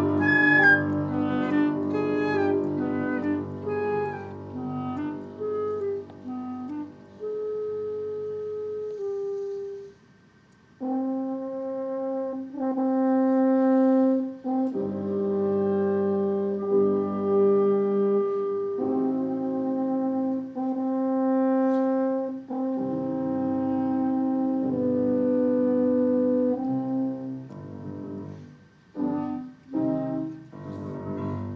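Chamber group of flute, clarinet, French horn and piano playing classical music. A busy falling run in the first several seconds breaks off in a short pause about ten seconds in, followed by held wind chords that change about every two seconds.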